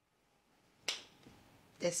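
A single sharp click or snap about a second in, which dies away quickly. A woman starts to speak near the end.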